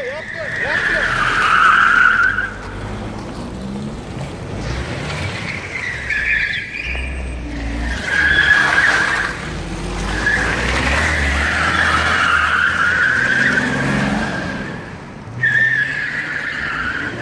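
Car tyres squealing in long stretches, with short breaks, as a car drifts round on asphalt, over the low sound of its engine under load.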